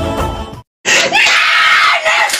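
A Bollywood song fades and cuts off about half a second in. After a short silence, a boy starts screaming loudly and keeps on screaming in a high, wavering voice.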